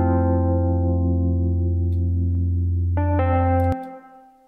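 Software Wurlitzer electric piano (Lounge Lizard) playing held chords washed in chorus and reverb, over a steady sub-bass line. A new chord comes in about three seconds in, and the sub-bass cuts off suddenly just before the end as playback stops.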